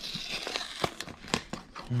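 A paperboard cake box being opened by hand: a sticker seal peeled off with a short tearing hiss, then a few sharp crinkling clicks from the box's paper flaps.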